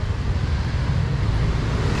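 Steady, low street rumble, with no single event standing out.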